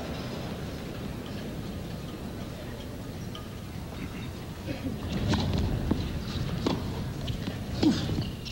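A hushed tennis crowd, then a serve and rally on a hard court: about four sharp pops of rackets striking the ball and the ball bouncing, starting about five seconds in.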